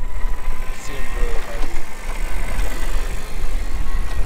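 Wind buffeting the microphone on an offshore sport-fishing boat, heard as an uneven low rumble over a steady hiss of wind and sea, with faint voices in the background.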